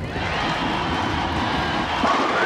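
Bowling ball rolling down a wooden lane, a steady loud rumble after it lands from the bowler's release.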